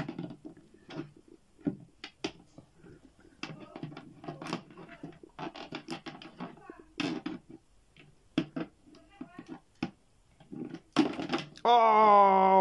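Plastic wrestling action figures being handled and knocked against a hollow plastic toy stage: scattered light clicks, taps and scrapes of plastic on plastic.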